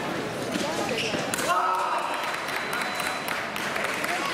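Background chatter of many voices echoing in a large hall, with scattered sharp clicks and knocks, a cluster of them about a second and a half in and again near the end.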